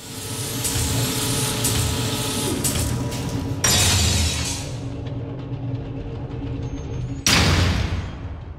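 Cinematic transition sound design under an animated graphic: a dense mechanical rumble with a few steady humming tones, cut by two sudden booming hits, a little over three and a half seconds in and again near the end, the last one fading away.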